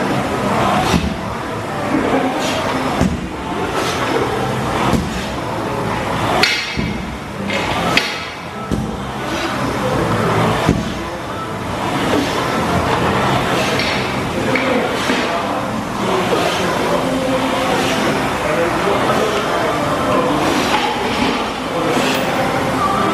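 Concept2 air-resistance rowing machine pulled hard at sprint pace: the flywheel whooshes and surges with each stroke, over and over, with the chain and seat running back and forth.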